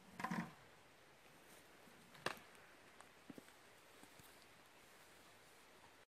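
Near silence, broken by a short faint sound just after the start, a single sharp click a little past two seconds in, and a couple of fainter ticks after it.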